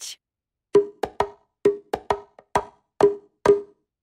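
Bongo drums played in a short rhythmic pattern: about nine sharp, ringing strikes in under three seconds.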